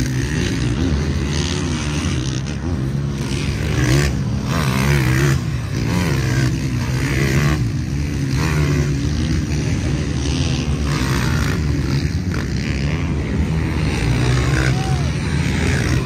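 Several off-road racing motorcycles running across loose beach sand, their engine pitch repeatedly rising and falling as the riders rev and shift, over a steady low drone.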